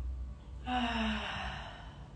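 A woman's audible exhale, a breathy sigh about a second long that opens with a brief falling voiced tone, while holding a yoga stretch. A steady low hum runs underneath.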